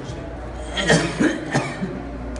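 A person coughing, a short run of coughs from about a second in.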